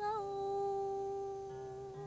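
A woman singing one long held note, starting with a slight scoop and holding steady, with a little vibrato near the end, over quiet instrumental accompaniment.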